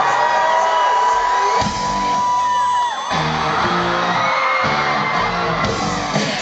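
Electro-punk band playing live, heard loud. A long held high tone slides down about three seconds in, and the band then comes in with a pulsing beat.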